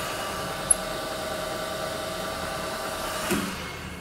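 Milling machine spindle running as a drill bores deeper into the end of a gear motor's shaft: a steady whine. About three seconds in there is a short knock, and the sound winds down.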